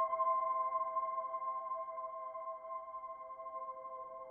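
Soft background music: a sustained chord of steady held tones with no beat, slowly fading.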